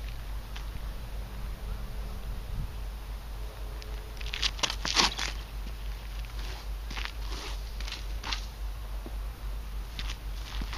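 Footsteps crunching on dry dirt and grass, a quick cluster of steps about four seconds in, then single steps about two a second. A low steady hum lies under them.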